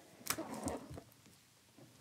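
Gloved hands handling and opening a stiff cardboard trading-card box: a sharp tap about a third of a second in and brief soft scuffing, then near quiet for the second half.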